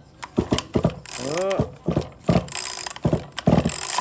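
Chainsaw recoil starter pulled several times in quick strokes, the ratcheting starter turning the two-stroke engine over against compression without it firing. The compression is still firm.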